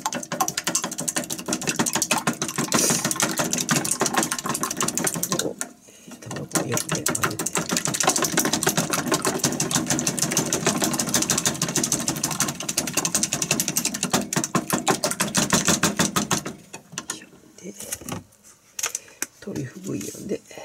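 Long wooden cooking chopsticks beating raw eggs in a plastic measuring cup: fast, steady clicking against the cup's sides, with a short break about six seconds in. The beating stops a few seconds before the end, leaving a few light knocks.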